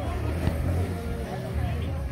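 A motorcycle engine running as it goes by in the street, a steady low rumble, with people talking in the background.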